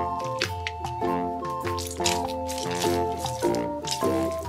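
Light background music with a simple melody, over wet squelching sounds of a mesh squishy stress ball being squeezed in the hand several times.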